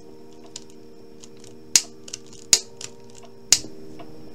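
Scissors snipping plastic shrink wrap: three sharp snips about a second apart, with a few lighter clicks between, over a faint steady hum.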